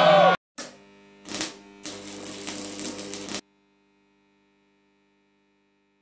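Crowd noise cuts off abruptly, followed by an electronic outro sound effect: two short whooshes, then a humming drone with steady tones that stops suddenly about three and a half seconds in, leaving only a faint hum.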